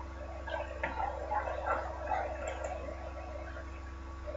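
A steady low hum with faint, indistinct sounds over it during the first half.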